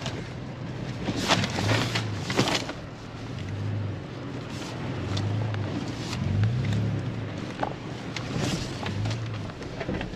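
Toyota FJ Cruiser's 4.0-litre V6 running at low speed in four-wheel drive over a rough dirt track, heard from inside the cabin, with a steady low hum that swells and eases. A few sharp knocks and rattles from the body over bumps come about one to two and a half seconds in.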